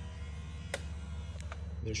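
Two sharp clicks, about two-thirds of a second apart, from the BMW G30's electrically driven radiator shutter flaps closing during a function test, over a steady low hum.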